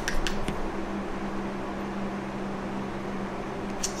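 Steady low mechanical hum with a faint even hiss, the sound of a running machine in a small room, with a few faint clicks in the first half-second.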